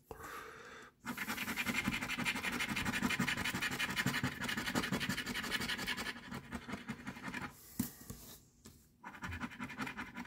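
A coin scraping the coating off a lottery scratch-off ticket. A short scrape comes first, then about five seconds of fast, steady scratching, which thins to lighter, broken strokes near the end.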